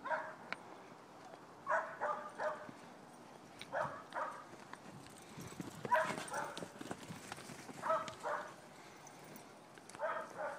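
Stock dog barking at cattle in short runs of two or three barks, one run every couple of seconds.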